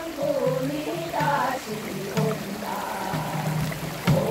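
Korean Gyeonggi minyo folk song sung by women's voices that slide and bend between notes, with a janggu hourglass drum beaten alongside.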